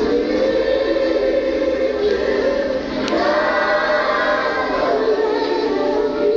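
A choir of voices singing together in long held notes, as a song with music.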